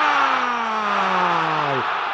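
A male Spanish-language football commentator's long drawn-out goal shout: one held vowel whose pitch slowly sinks, breaking off just before the end, over stadium crowd noise.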